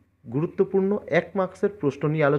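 Speech only: a voice narrating in Bengali, starting after a brief pause.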